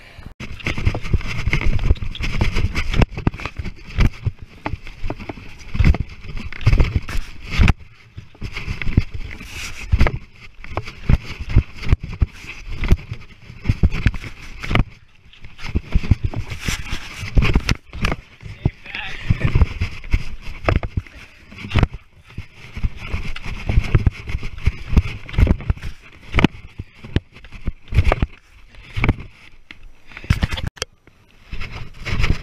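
Wind rumbling on a handheld action camera's microphone, with many irregular knocks and thumps as the camera is handled and carried, and indistinct voices.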